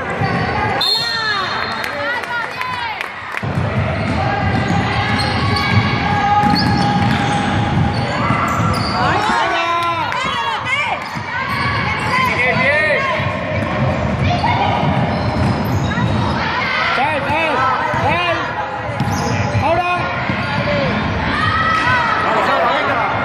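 Sounds of a basketball game in an echoing sports hall: sneakers repeatedly squeaking in short chirps on the court floor, the ball bouncing, and players and spectators calling out.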